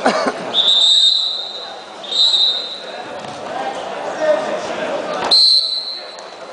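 Referee's whistle blown three times in a wrestling hall: a long blast, a short one, then another near the end. A knock comes just before the last blast, over a murmur of crowd voices.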